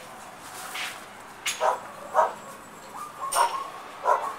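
Small poodle mix giving short yips and whimpers, about four brief sounds roughly a second apart, with a thin whine near the end.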